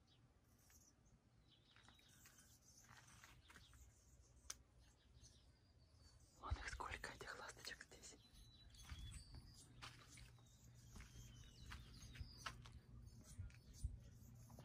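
Near silence: faint outdoor background with scattered soft clicks and rustles, louder for about a second and a half some six and a half seconds in.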